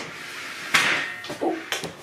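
Rustling of clothing and movement with one sharp knock a little under a second in, as a person sits back down at a table close to the microphone. A brief murmur of voice follows near the end.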